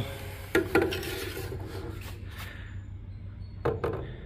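A spirit level knocked and slid across a wooden stair tread: a couple of sharp knocks about half a second in, scraping and rubbing on the wood, then two more knocks near the end as it is set down.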